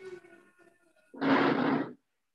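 A short, breathy voice sound like a sigh or exhale, lasting under a second from a little past the middle, heard through a video-call microphone, after some faint murmuring.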